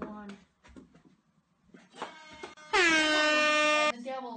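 End-of-period hockey horn sounding once for about a second, starting nearly three seconds in, as the clock runs out. A single loud note that dips in pitch at its onset, then holds steady and cuts off abruptly.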